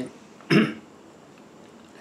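A man coughing once, a single short burst about half a second in.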